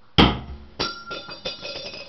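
A metal shuriken hits a wooden door with a loud knock, then falls and clatters on the floor, striking several times with a bright metallic ring. It bounced off rather than sticking.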